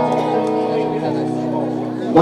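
Electric guitar picking a chord note by note and letting the notes ring on together, steady and sustained.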